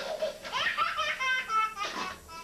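A toddler laughing out loud: a burst right at the start, then a run of quick, high-pitched peals of laughter.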